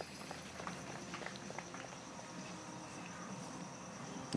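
Faint outdoor background: a steady hiss with a thin, high-pitched steady tone and a few light ticks.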